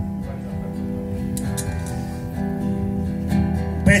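Acoustic guitar playing slow, sustained chords that change about once a second, as an introduction.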